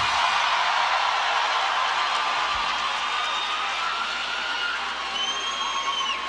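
Large stadium crowd cheering and whooping just after a rock song's final chord, the cheer slowly fading. A few individual shouts stand out near the end.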